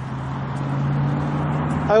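A road vehicle's engine hums steadily and low over outdoor traffic noise, edging slightly up in pitch about a second in.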